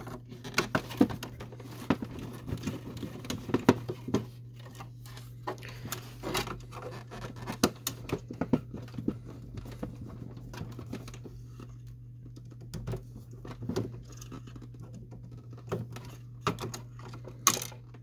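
Phillips screwdriver backing out the small screws that hold an inkjet printhead in its plastic carriage: irregular light clicks and scratches of the bit and screws, over a steady low hum.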